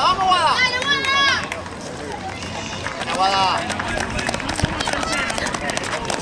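High-pitched shouting and cheering from trackside onlookers, one long burst in the first second and a half and another about three seconds in. Quick footfalls of sprinters on the track follow as short clicks.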